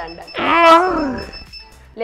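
A single drawn-out vocal cry, its pitch rising then falling, about half a second in and lasting under a second, over a thin steady high tone.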